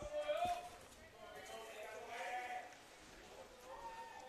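Distant voices of players and spectators calling out at a ballfield, faint drawn-out shouts heard under the quiet field ambience: one near the start and a longer one around the middle.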